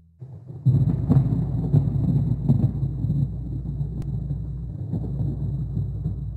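Rolling thunder sound effect: a long low rumble with scattered crackles that swells within the first second and slowly dies away.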